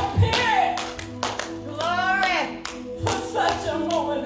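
A woman singing into a microphone over held keyboard chords, with hand claps keeping time about twice a second.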